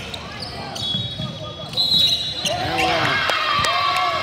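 Basketball bouncing on a hardwood gym floor during play, with high-pitched sneaker squeaks in the middle of the stretch.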